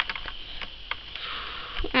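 Faint scattered clicks from a small plastic toy swing swinging back and forth with tiny Shopkins figures in its seat.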